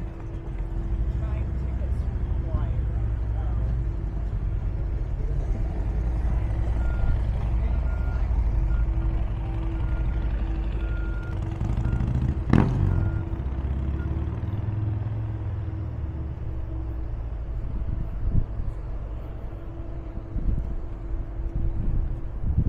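A heavy engine running steadily, a low rumble with a constant hum over it. Short high beeps come and go a little over halfway in, and a single sharp bang follows just after.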